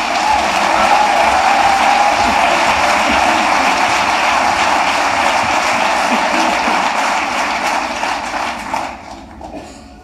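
Audience applauding, the clapping dying away about nine seconds in.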